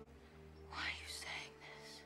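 A softly whispered voice, breathy and without pitch, starting a little way in, over quiet sustained background music.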